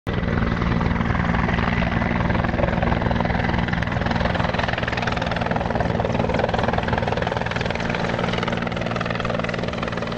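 Helicopter flying: a steady, fast rotor chop and engine noise, with a thin high whine over it.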